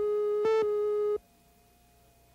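Videotape countdown-leader tone: a steady tone with a brief louder beep once a second, cutting off suddenly a little over a second in and leaving only faint tape hum.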